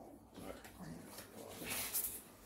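Quiet room with a child's soft murmur, then a brief rustle of a paper picture card being handled near the end.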